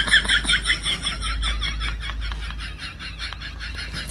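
A rapid, high-pitched snickering laugh, about six pulses a second, slowly trailing off.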